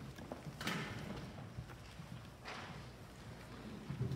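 Footsteps and shuffling of several people walking on a church floor, with small knocks and two louder scuffs, one under a second in and one about two and a half seconds in.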